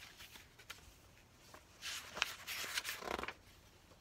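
Pages of a paperback picture book being flipped and turned by hand, the paper rustling with a few light clicks, loudest from about two seconds in.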